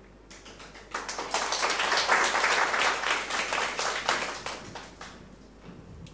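Audience clapping: a dense patter of hand claps that starts about a second in and dies away after about four seconds.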